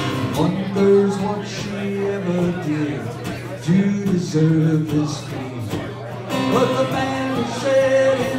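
Solo male singer accompanying himself on a strummed acoustic guitar, singing long held notes, heard live through a small PA with a steady low hum underneath.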